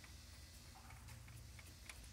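Hand ratchet clicking faintly, a few light clicks a second, as it runs a new head stud down into a Cummins diesel block.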